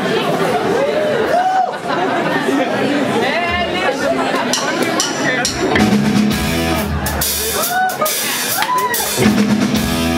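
Live rock band with drum kit, bass guitar and electric guitar starting to play about halfway in, with voices heard over it, in a reverberant club.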